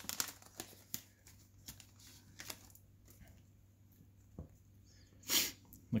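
Trading-card pack wrapper being torn open and the stack of cards slid out: faint scattered crinkles and clicks over the first few seconds, then a short louder rush of noise near the end.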